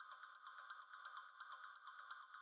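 Near silence: only a very faint electronic background music bed of steady high tones with light, regular ticks.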